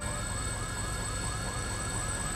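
Emergency vehicle siren on a fast yelp: short rising sweeps repeating about five times a second at a steady level.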